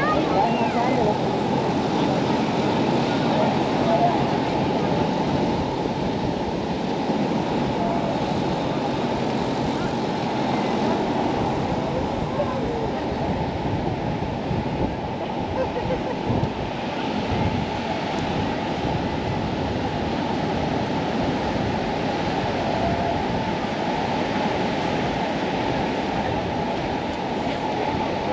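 Steady wash of ocean surf mixed with wind noise on the microphone, with people's voices here and there.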